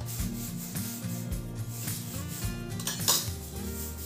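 Background pop music with a steady bass line and some singing, over kitchen handling noise as a spoonful of sugar is added to a pan of simmering sauce. A spoon clinks or scrapes against the pan about three seconds in, the loudest moment.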